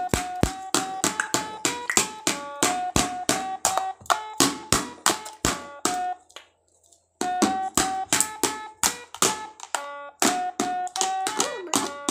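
Rapid, uneven tapping of plastic sticks on a light-up toy drum, mixed with short electronic notes of a tune from the toy, with a pause of about a second just past the middle.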